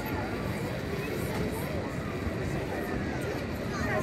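Indistinct voices of people close by, heard over a steady low noise.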